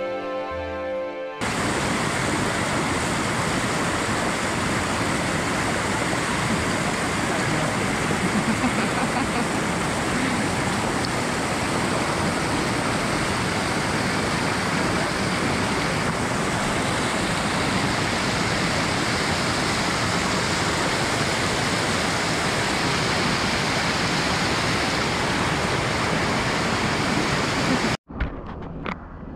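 Music for about the first second and a half, cut off abruptly, then the steady, even rush of hot-spring water flowing down the terraced cascades and pools of the Saturnia thermal springs.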